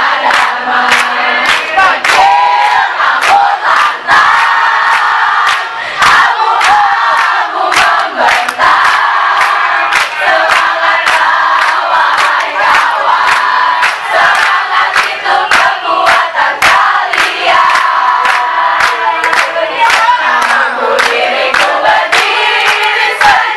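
A large crowd of students singing and shouting a chant together while clapping in time, about two claps a second.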